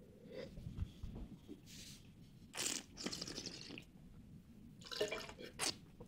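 Red wine sipped from a glass and slurped, air drawn through the wine in the mouth in a few short wet hisses, the longest about two and a half seconds in, with small mouth and glass clicks.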